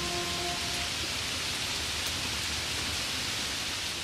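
A steady rain-like hiss of noise, with the last held notes of the closing music ringing out and dying away in the first second.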